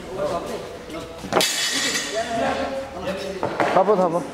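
People talking, with one sharp metallic clank and a short ring about a second and a half in, typical of a loaded barbell's plates knocking on the gym floor.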